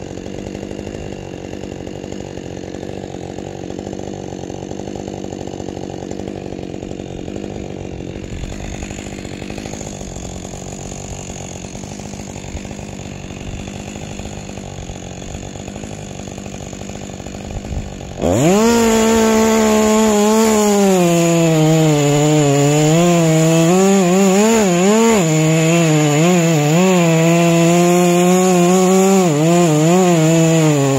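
Chainsaw cutting into the trunk of an ash tree at its base: after a quieter steady stretch, the saw suddenly goes to full throttle about two-thirds of the way in, and its pitch sags and wavers as the chain bites into the wood.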